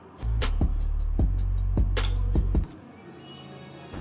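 Short burst of music with a heavy bass and a fast beat of sharp ticks, cutting off suddenly about two and a half seconds in and leaving a low background.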